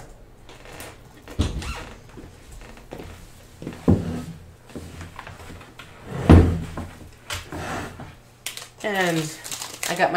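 Dull knocks and handling noise as things are fetched and set down on a table mat: three thumps about one and a half, four and six seconds in, the last the loudest. A woman's voice starts near the end.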